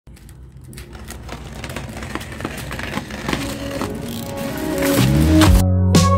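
A plastic mailer pouch crinkling and being snipped open with scissors, a string of sharp clicks and rustles, while music fades in underneath. About five seconds in, the music's sustained notes take over as the main sound.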